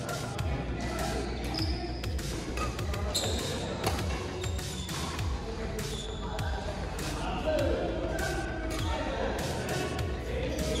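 Repeated sharp knocks of shuttlecocks struck by badminton rackets, echoing in a large sports hall, with background music and voices.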